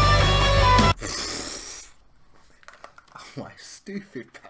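Live rock band music led by electric guitar that stops abruptly about a second in, as the playback is paused. A short breathy sound and faint vocal noises from a man follow.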